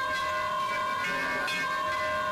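Temple bells ringing continuously, struck again and again so that their metallic tones overlap and sustain.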